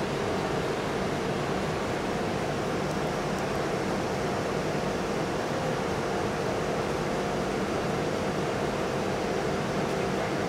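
Steady ventilation and machinery hum in a large industrial hall: an even rush of noise with a few constant low hum tones.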